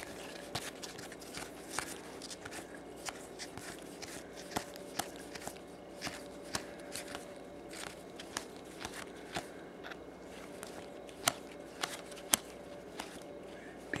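Baseball trading cards being slid off a stack one at a time by hand, a light tick or snap as each card moves, about two a second.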